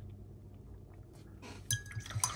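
Quiet at first, then near the end a paintbrush clinks against a glass water jar several times as it is swished in the water to rinse it, and the glass rings briefly.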